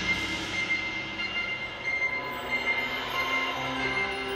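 Percussion ensemble music: a loud held chord dies away into soft sustained tones, and a few quiet pitched notes come in near the end.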